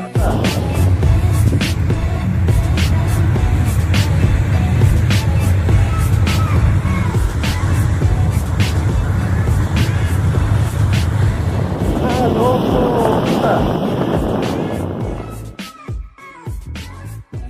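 Low, steady rumble of a vehicle driving along a sandy dirt track, mixed with music with a regular beat.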